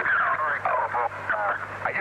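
A man's voice speaking over a telephone link in an old recording, with a steady low hum underneath.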